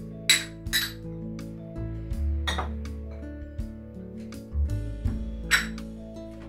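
Small dishes clinking against each other as they are picked up and stacked: a few sharp, ringing clinks, two close together near the start, one midway and one near the end, over background music.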